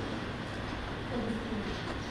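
Steady low rumble of background noise in a large hall, during a pause in a woman's speech, with a brief faint vocal sound a little past the middle.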